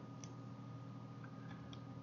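Faint steady hum with a few soft clicks from computer use, one early and three more in the second half.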